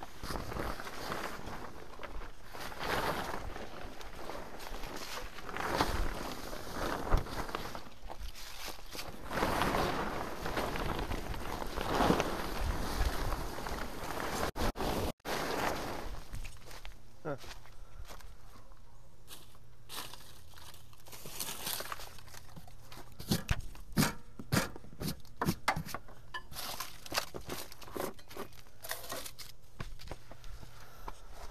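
A fabric tractor cover being dragged and bunched up, rustling and crinkling in irregular bursts. After a sudden break about halfway, footsteps crunch on dry leaves and dirt, with scattered sharp clicks.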